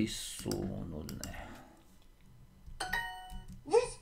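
Duolingo app's correct-answer chime: a short, bright ding made of several steady tones, starting suddenly about three seconds in and dying away within a second. A few sharp clicks come earlier.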